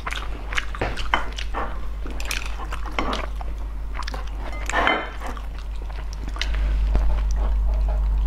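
Close-miked eating sounds: scattered soft, wet clicks and smacks from chewing and from handling a sticky braised pork hock, over a low steady hum that gets louder about two-thirds of the way through.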